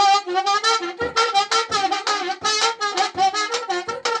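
A reedy, saxophone-like melody blown through a raw animal windpipe: a fast run of short, wavering notes, about four or five a second.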